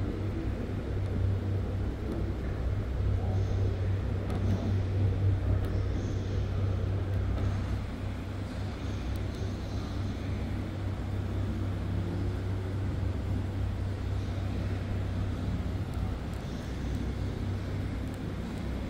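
Steady low hum over a constant rumbling background, the ambient noise of a large hangar, a little louder in the first half.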